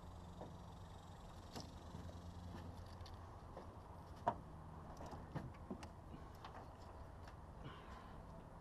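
Scattered light knocks and clicks against an aluminium jon boat hull, with one sharper knock a little past the middle, over a faint steady low hum.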